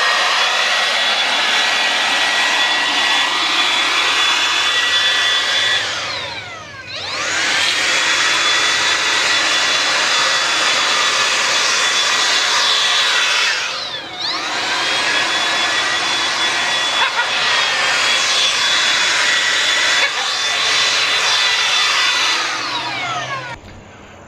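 DeWalt handheld leaf blower running at full speed with a steady whine over the rush of air. Its speed dips and climbs back twice, about a quarter and then just over halfway through, and it winds down to a stop just before the end.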